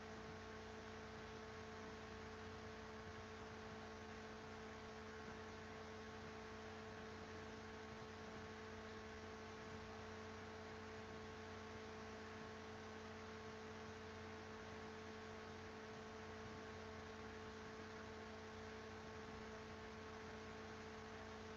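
Faint, steady electrical hum with a few fixed tones over a low hiss, unchanging throughout.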